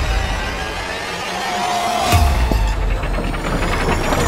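Horror-trailer sound design: a dense, noisy rumble that thins out, then a deep boom hit about two seconds in, followed by a faint high rising whine that builds toward the end.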